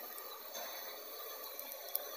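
Faint steady hiss with a couple of soft clicks near the end.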